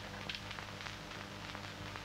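Low steady hum under a faint hiss and crackle, the background noise of an old film soundtrack.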